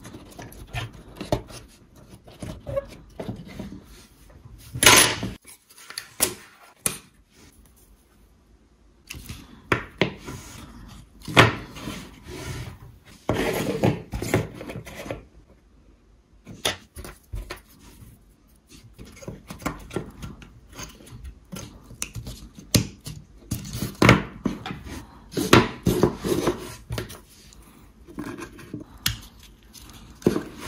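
Thin wooden puzzle pieces of a tank model being pressed and slid into each other's slots by hand: irregular clicks, taps and short scrapes of wood on wood, with a few sharper snaps as pieces seat.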